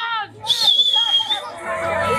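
A single whistle, one high note held for about a second that dips slightly in pitch, over several people's voices and chatter.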